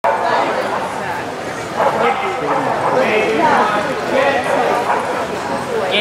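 A dog barking amid the chatter of people in a large indoor hall.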